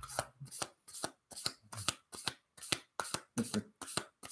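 A deck of oracle cards being shuffled overhand, hand to hand: a steady run of short, sharp swishes and slaps, about three a second.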